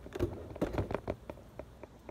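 Handling noise of a camera being grabbed and repositioned: a run of small irregular clicks and knocks, busiest in the first second and thinning out after.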